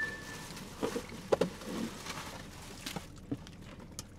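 Quiet eating sounds: chewing of quesadilla and taco, with a few soft, short clicks and rustles scattered through.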